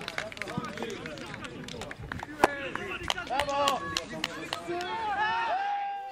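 Live sound of an amateur football match: players and onlookers shouting and calling out across the pitch, with a few sharp knocks, the loudest about two and a half seconds in.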